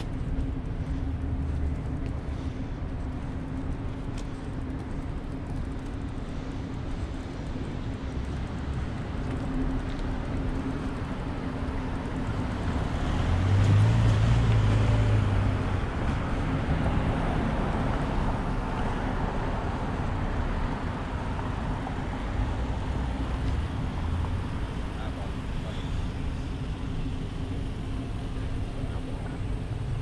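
Street traffic noise: a steady rumble with a constant low hum, and a motor vehicle passing louder about halfway through.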